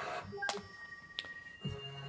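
Faint television sound made of steady held tones, like background music, with a sharp click about half a second in and a softer one a little later. A voice starts near the end.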